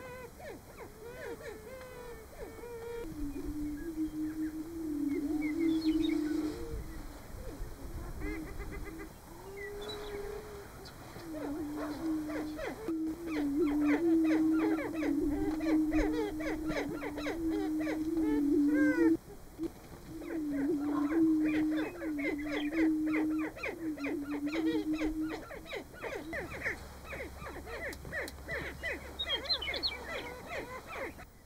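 Greater prairie-chicken males booming on a lek: overlapping low booming notes that step slightly in pitch, in runs of several seconds. Sharp higher calls and a meadowlark's song sound over the booming.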